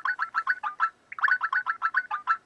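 Skype's outgoing call tone playing on a second-generation iPod touch as a call is placed: two runs of short rapid beeps, about eight a second, flicking between two close pitches, with a brief gap about a second in.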